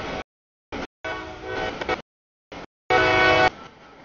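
Diesel freight locomotive air horn sounding at a grade crossing: a blast about a second in and a louder blast near the end that cuts off abruptly, over the noise of a passing train. The sound comes in clipped fragments with sudden gaps.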